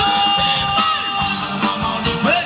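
Live Thai dance-band music over loudspeakers: a steady drum beat under long held notes, with a singer's wavering voice coming in near the end.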